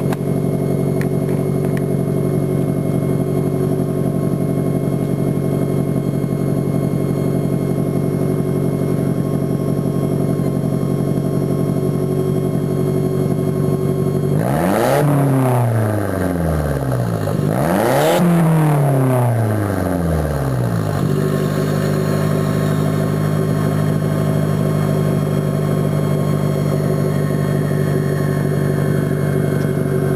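Exhaust of a 1988 Toyota Celica All-Trac's turbocharged 2.0-litre four-cylinder, heard at the tailpipe, idling steadily. About halfway through it is revved twice in quick succession, each rev rising sharply and falling back to idle over a couple of seconds.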